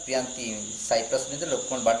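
Crickets chirping in a steady high trill with a faster pulsing chirp beneath it, under a man speaking.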